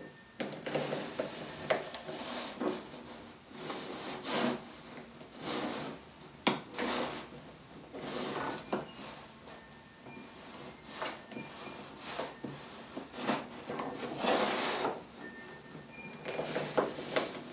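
A pencil held flat against a hardwood cleat, scraping along the plywood in repeated short, uneven strokes as a parallel line is scribed, with one sharp tap about six and a half seconds in.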